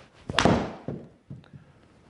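A golf hybrid striking the ball on a deliberately slower swing: one sharp crack about a third of a second in that rings off briefly, followed by two faint taps.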